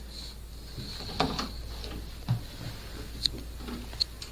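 Door knob turning and a door being opened by hand: a few sharp clicks and knocks, with a low thump a little past two seconds in, over a steady low hum.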